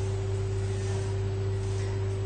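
Steady low electrical hum with a constant higher tone above it, over faint hiss.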